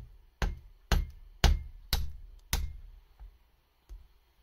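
A soft-faced mallet tapping a small pin into the steel damper rod of a suspension fork's damping cartridge: about two sharp knocks a second, six blows in all, the hardest in the middle, then one light tap near the end.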